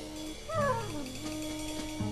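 Experimental electronic free jazz: held low tones, then about half a second in a pitched tone slides steeply downward for about half a second before settling into a sustained note.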